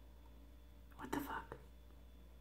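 A woman's brief whisper about a second in, lasting about half a second, against quiet room tone.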